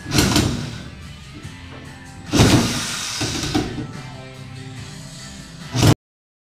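Music playing, broken by several heavy thuds of a plywood deck sheet being handled on a small boat: one just after the start, a louder one about two and a half seconds in, two smaller knocks soon after, and a last one near the end, where the sound cuts off suddenly.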